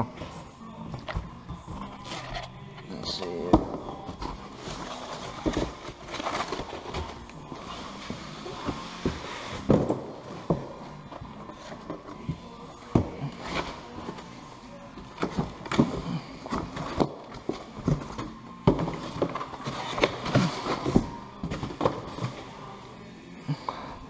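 Cardboard box flaps being folded back and foam packing sheets pulled out: continual rustling, scraping and crinkling, broken by many irregular sharp taps and knocks.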